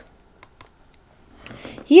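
Two sharp computer mouse clicks in quick succession, switching a tab in the PDF reader, followed by a few fainter clicks; a woman starts speaking at the very end.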